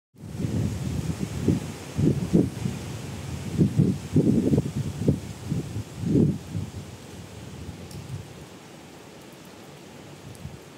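Wind buffeting the microphone in irregular low gusts for the first seven seconds or so, then settling to a faint, steady outdoor hiss.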